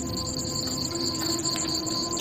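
Crickets trilling in a steady, high-pitched chorus over a low background hum.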